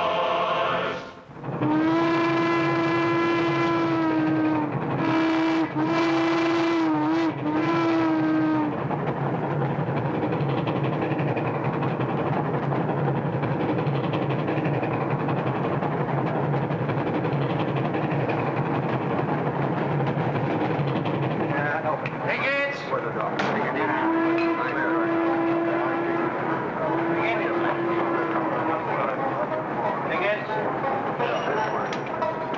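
Steam locomotive whistle blowing one long blast and then three shorter ones, followed by the steady rumbling of the train running, with two more whistle blasts near the end.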